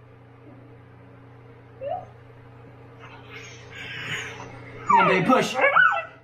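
Siberian husky in labor whimpering during a contraction: a short rising whine about two seconds in, then a loud, wavering high-pitched cry near the end.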